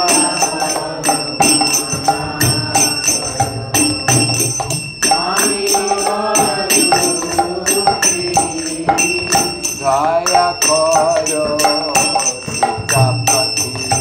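Devotional kirtan music: voices singing a melody over small brass hand cymbals (karatals) struck in a steady, fast rhythm that keeps up a bright, continuous ringing, with a drum beating underneath.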